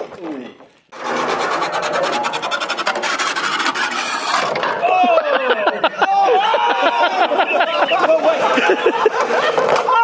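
A small wheeled rocker-cover racer rattling and scraping as it rolls, a fast run of clicks that stops about four seconds in. Then a group of men laughing and shouting.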